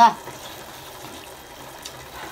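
Steady, even hiss of a pot of red hot pot broth boiling, with one faint tick near the end.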